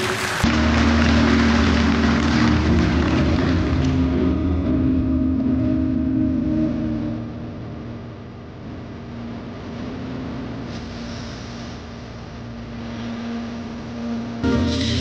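Audience applause after a song, loud for the first few seconds and then dying away, over a steady low tone.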